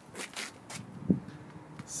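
A handful of soft scuffs and clicks, about five in two seconds, from someone walking on pavement while holding a phone camera.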